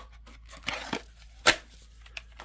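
A steel 1911 pistol sliding into a Kydex holster with a short plastic-on-metal scrape, then one sharp click about one and a half seconds in as it seats in the holster.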